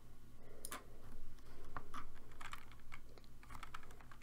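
Computer keyboard keys clicking: a few faint, irregular key presses.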